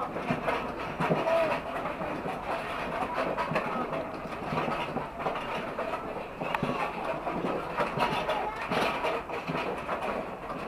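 Alpine coaster sled rattling along its track on the slow uphill haul, a steady clatter with irregular clicks.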